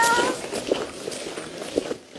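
A dog's short, high whine rising in pitch at the start, followed by a few footsteps.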